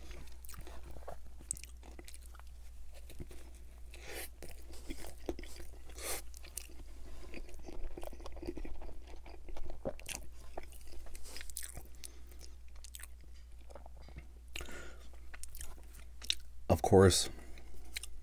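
Close-miked chewing and biting of a chili cheese hot dog in a soft bun: scattered wet mouth clicks and smacks, over a steady low hum. A brief vocal sound comes near the end.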